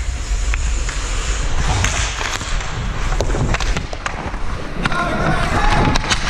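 Ice hockey skates scraping and carving on the ice, with sharp clacks of sticks and puck from about two seconds in. A low rumble of wind on the microphone runs under it.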